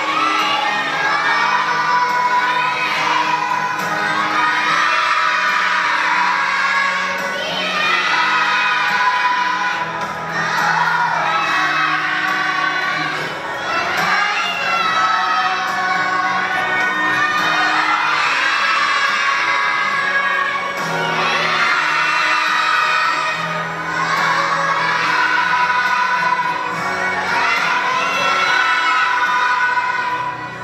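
A large group of preschool children singing a Christmas song together over recorded accompaniment music, loud and continuous.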